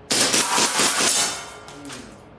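A fast string of air pistol shots mixed with metallic clinks of hits on steel plate targets. The run lasts about a second and a half and then fades.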